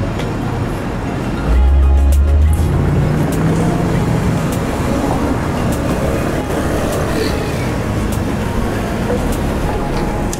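Street traffic noise with cars driving by. A vehicle passes close with a loud low rumble from about one and a half to two and a half seconds in, followed by a lower steady engine tone.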